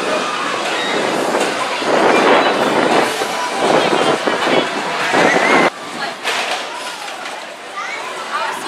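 A roller coaster's cars running along the steel track with a loud, steady clattering rumble, which cuts off suddenly a little before six seconds in.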